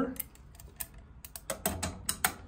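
A series of light clicks and taps as covers are fitted back onto an electrical junction box.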